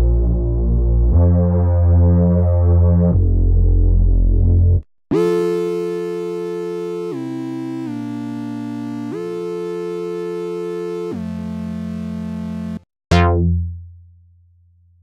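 Minimoog Model D synthesizer app playing factory presets: a chorused bass holding low notes, then, after a brief gap, a bright, buzzy held tone stepping through notes about two seconds each. Near the end a short plucked bass note sounds, its brightness closing off quickly as it decays.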